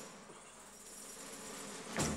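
A faint, steady, high-pitched buzzing drone that slowly grows louder.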